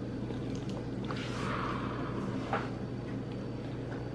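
A metal spoon stirring and scooping oatmeal in a ceramic bowl, with two faint clicks of the spoon against the bowl, over a steady low hum.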